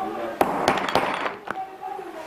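Hammer striking a set of three hollow leather hole punches bound together, driving them through leather to cut brogue holes: four sharp metallic strikes in the first second and a half, the first three close together with a clinking ring.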